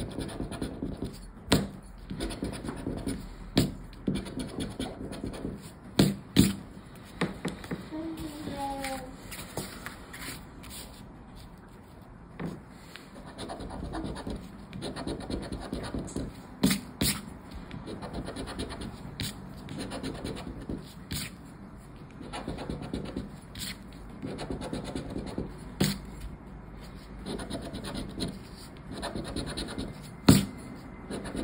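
Scratch-off lottery cards being scratched with a round black scratcher tool: runs of rasping strokes across the card's coating, broken by short pauses and occasional sharp clicks.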